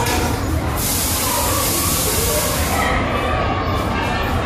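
A steady hiss lasting about two seconds, starting a little under a second in, over a constant low rumble and faint voices of a large indoor hall.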